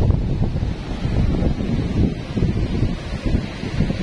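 Strong wind buffeting the microphone in uneven gusts, over the rush of sea surf.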